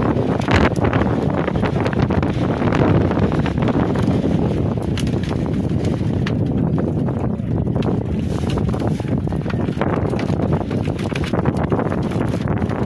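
Wind buffeting the microphone in a steady rough rumble, with scattered light clicks and knocks throughout.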